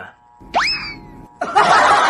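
An edited-in comic sound effect: a single quick pitch glide about half a second in, sweeping sharply up and then sliding slowly down. About a second and a half in, a loud burst of hissing noise starts and carries on.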